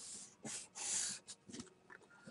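Faint breath sounds from a person close to the microphone: two soft puffs of air, the second a little longer.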